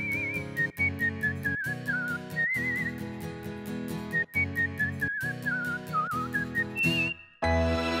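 End-credits theme music: a whistled melody with vibrato over a bouncy backing with regular ticking percussion. It cuts off about seven seconds in, and a new sustained chiming chord begins just before the end.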